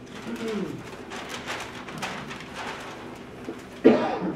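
A man coughing and clearing his throat: a short low voiced rasp, a run of rough coughs, then a louder cough near the end.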